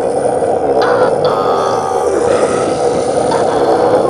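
A loud, continuous monster growl sound effect for the swimming sea reptiles, mixed with background music.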